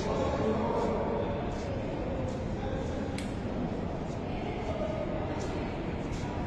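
Indistinct, muffled voices over steady background noise, with faint light ticks roughly every second.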